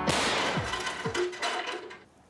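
A homemade cookie launcher firing and misfiring in a loud sparking, crackling blast, with music and falling swoops under it; it cuts off sharply near the end.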